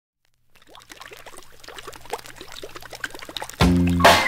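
Bubbling-water sound effect: a fast run of short blips, each rising in pitch, growing louder over a low hum. Near the end the band comes in loudly at the start of the song.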